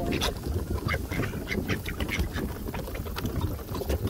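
A flock of mallards feeding at close quarters: many quick clicks and taps of bills pecking food off wooden boards, with low duck calls among them.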